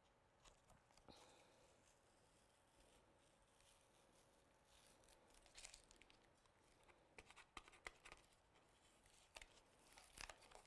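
Near silence, with faint rustles and small clicks of masking tape being peeled slowly off watercolour paper and the paper card being handled.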